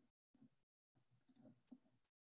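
Near silence with a few faint clicks of a computer mouse, two sharper ones about a second and a half in.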